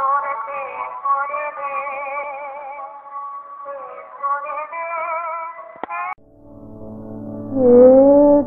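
Music: a high voice singing a long, ornamented phrase with vibrato, which breaks off about six seconds in. A low sustained drone then enters, and a new sung phrase begins near the end.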